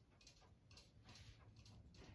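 Near silence, with faint soft ticks and rustles from hand sewing: needle and thread weaving through a knit sweater's edge.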